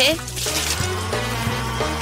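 Background music, with a handheld milk frother whirring in a glass of milk and splashing it.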